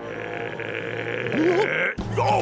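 A steady hiss-like noise, with a short rising, wavering vocal cry over it a little past the middle.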